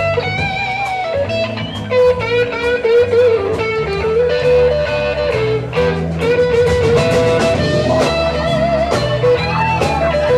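Live blues-rock band playing an instrumental break: an electric guitar plays a lead line of bent, wavering notes over bass and drums.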